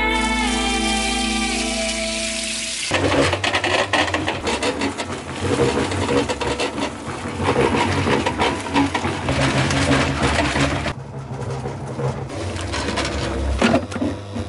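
Background music fading out, then a small electric cement mixer running: a gritty rattling churn of the mud mix tumbling in the drum over a steady low motor hum, turning quieter near the end.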